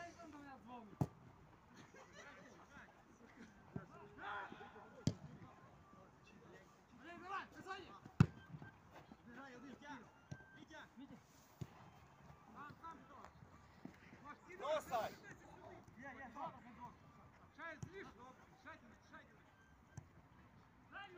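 Football match on an artificial pitch: players' scattered shouts carry from across the field, with several sharp thuds of the ball being kicked, the loudest about eight seconds in.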